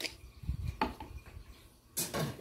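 Kitchenware being handled at a metal roasting pan: three short clinks and knocks within the first second, then quiet handling noise.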